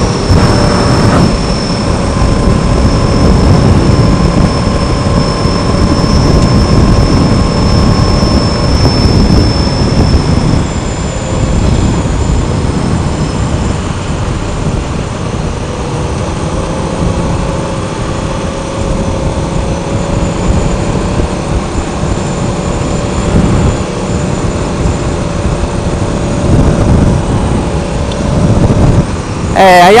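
Motorcycle riding at road speed: wind rushing over the bike-mounted microphone with the engine running underneath, a few faint steady tones over the rush.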